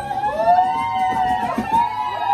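A group of women's voices holding long, high notes that bend up and down, several overlapping at once, in a drawn-out sung or whooping cry.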